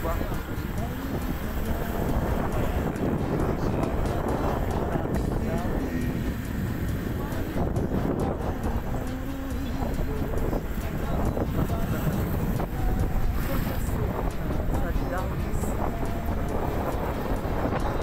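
Steady wind buffeting the microphone and road noise from a moving vehicle.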